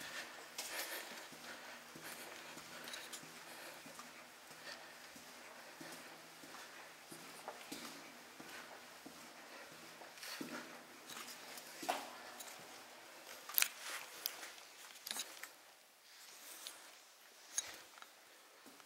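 Slow, scattered footsteps and scuffs on a gritty concrete tunnel floor, louder in the second half, over a faint steady low hum that fades out near the end.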